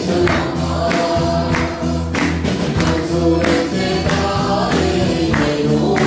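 Punjabi Christian Christmas song: voices singing over instruments, with a steady percussion beat of about two strokes a second.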